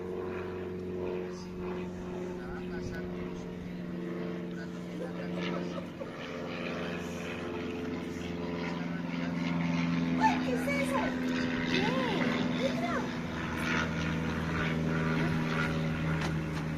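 A motor engine droning steadily, a low even hum whose pitch shifts slightly about halfway through.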